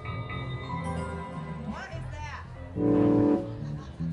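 Electric stage keyboard playing held chords, with a louder chord about three seconds in.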